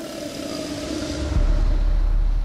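Cartoon car sound effect as the leaking car belches black smoke and gives out: a held, slightly falling droning tone fades, and a deep rumble swells in about a second and a half in.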